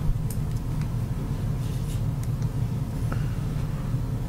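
Steady low rumble of room background noise, with a few faint clicks.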